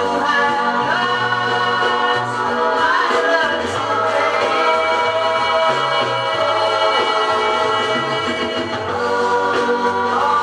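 A 7-inch vinyl single playing on a turntable: a pop song with group harmony vocals over a band backing, at a steady level.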